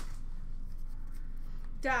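Faint scraping of Upper Deck hockey cards being slid and flipped through by hand, over a steady low hum.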